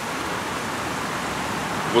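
Steady rush of water from an artificial waterfall, an even hiss that does not change.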